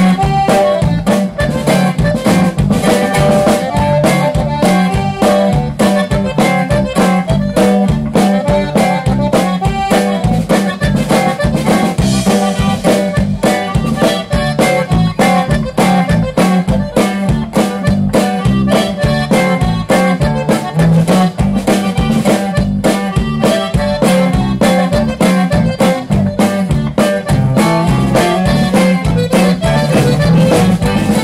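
Conjunto band playing a polka: button accordions carry the melody over bajo sexto, electric bass and drum kit in a steady, driving two-step beat, with no singing.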